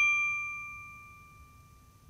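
A single bell-like ding, struck just before and ringing out with a few clear high tones, fading away steadily over about a second and a half.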